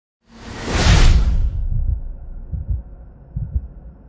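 Intro sound effect: a loud whoosh that swells and fades in the first second and a half, followed by low thuds in pairs, about a second apart.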